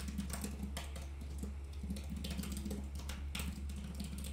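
Typing on a computer keyboard: quick, irregular key clicks, over a low steady hum.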